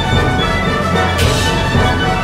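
Symphony orchestra playing loudly with dense, sustained chords, and a cymbal crash about a second in.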